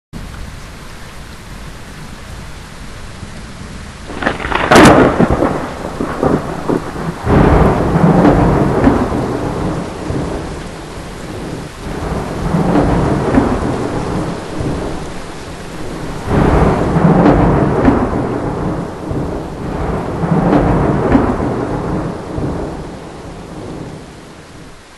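Thunderstorm: steady heavy rain, then a sharp crack of thunder about four seconds in, followed by three long rolls of thunder that swell and fade.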